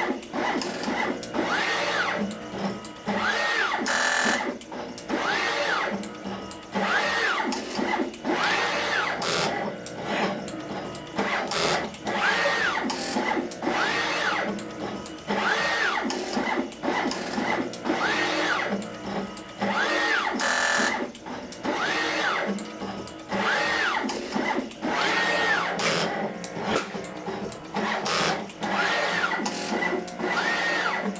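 NeoDen TM245P desktop pick-and-place machine running at full speed with both pick heads: its gantry motors give a whine that rises and falls about every two seconds, with rapid clicks between the moves.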